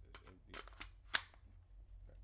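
A 30-round magazine being pushed into an AR pistol's magazine well: a couple of light clicks, then one sharp click a little over a second in as it seats.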